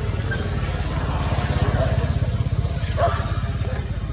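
A small engine running steadily at low revs: a fast, even, low pulsing. A few brief higher-pitched calls sound over it around the middle and about three seconds in.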